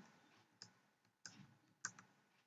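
Three faint computer keyboard key clicks, spaced a little over half a second apart, as bits are typed into a console program.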